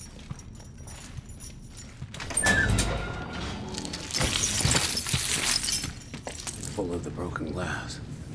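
Footsteps crunching over broken glass on a cell floor, with a chain clinking. It is quieter for the first couple of seconds, then the crunching and clinking grow busier through the middle.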